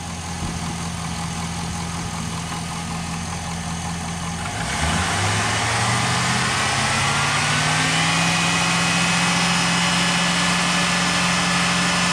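Car engine idling, then revved up about a third of the way in and held at a raised, steady speed of about 2500 rpm, so the alternator's charging output can be tested under load.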